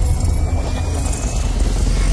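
Cinematic intro sound effect: a loud, deep rumbling bass drone with a thin, faint tone slowly rising in pitch above it.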